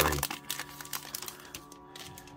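Foil trading-card booster pack wrapper crinkling as the cards are pulled out of it, dying away after about a second and a half, over quiet background music.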